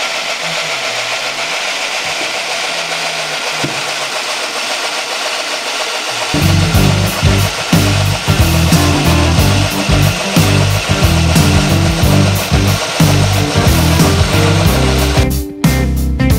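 Motor-driven corn mill grinding soaked maize and cheese into masa, a steady dense grinding noise. About six seconds in, background music with a strong beat comes in over it, and the grinding cuts off near the end while the music carries on.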